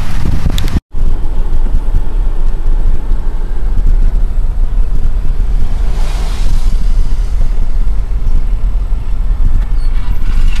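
Heavy wind buffeting on the microphone with low road rumble from a moving vehicle, filmed from inside it. The sound drops out completely for a split second about a second in, then carries on.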